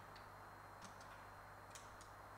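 Near silence: a steady faint hiss and hum from the sound system, with a few light clicks scattered through it.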